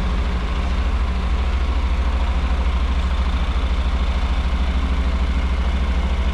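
Motorcycle engine idling steadily, an even low pulsing with no change in revs.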